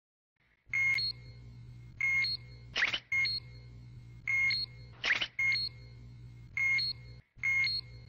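Dragon Radar sound effect: a two-note electronic beep, a lower tone then a higher one, repeating about once a second over a steady low hum. Two short, sharper chirps cut in about three and five seconds in.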